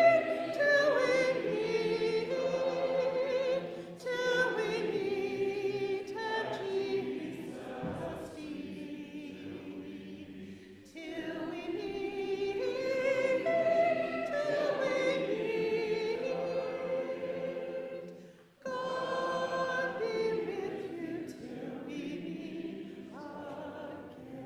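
Congregation singing a hymn together, led by a song leader. The hymn moves in long sustained phrases with short breaks between them.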